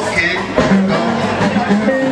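Live band music with a man singing into a handheld microphone.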